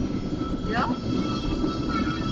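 Passenger train running, a steady low rumble heard from inside the carriage, with a short voice falling in pitch just under a second in.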